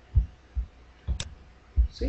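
Desk noise from working a computer keyboard and mouse: a few dull low thumps, irregularly spaced, with one sharp click about a second in.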